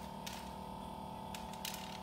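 Novecel F10 mini liquid nitrogen freezer running just after start-up with a low, steady hum, while it cools toward its −140 setting. A few light clicks and taps sound over it, from the foam cover being handled.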